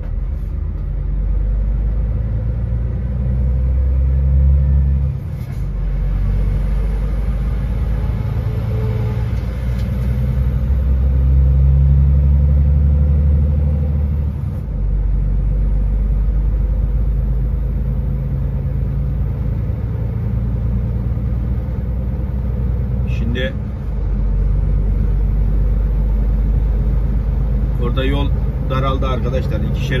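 Heavy vehicle's engine and road noise heard from inside the cab while driving, a steady low drone whose pitch and level shift in steps three times, with a brief dip in level at each step.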